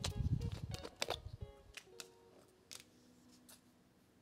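A quick run of small clicks and low knocks in the first second and a half as diamond painting supplies are handled on the desk. Soft background music plays throughout.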